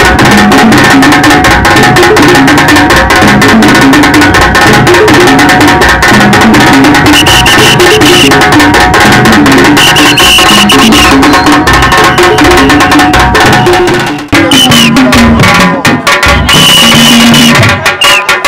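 Loud drum-led music of a Sukuma traditional dance (ngoma), with dense, rapid drumming under a repeating melodic line. It briefly drops out about fourteen seconds in, then resumes.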